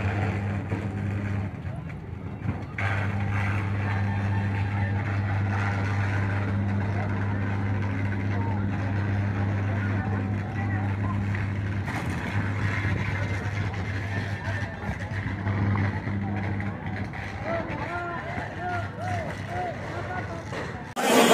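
Street ambience: a steady low engine hum, like a vehicle idling close by, under general traffic noise and the voices of people in the crowd, the voices standing out more near the end.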